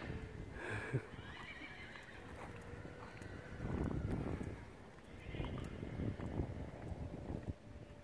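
A horse whinnying, heard twice, about four seconds in and again from about five seconds on.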